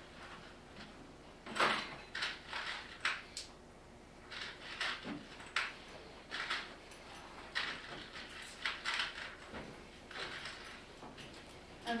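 Irregular handling noises: a string of short scrapes and rustles, a dozen or so over about ten seconds, starting about a second and a half in, as objects are rummaged and moved about in a box on a table.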